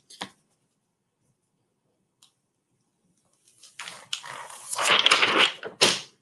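Heat transfer vinyl's carrier sheet being peeled off a fabric bandana after a warm-to-cool peel, a crackling rustle starting about three and a half seconds in.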